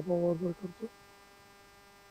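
A man's voice for about the first second, then a faint steady electrical hum.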